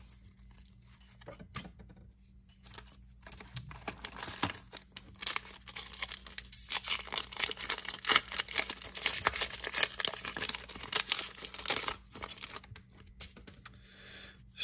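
An Upper Deck hockey card pack's shiny wrapper being torn open and crinkled by hand. A few light rustles come first, then a dense crackling from about four seconds in until near the end.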